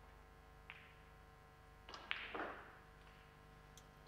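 Snooker cue tip striking the cue ball with a light click, then about two seconds in a louder clack of ball on ball and the rattle of the blue dropping into a pocket.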